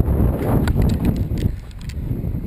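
Mountain bike riding over a rough dirt trail: wind rush on the camera microphone and tyre rumble, with a run of sharp irregular clicks and rattles from the bike from about half a second in. The rumble eases about one and a half seconds in.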